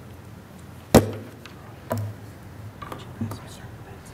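A single sharp thump about a second in, the loudest sound here, followed by faint murmured voices.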